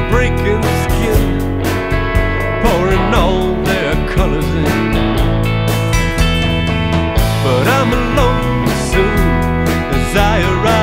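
Instrumental passage of a rock song: guitar lines with bending notes over drums and bass, without vocals.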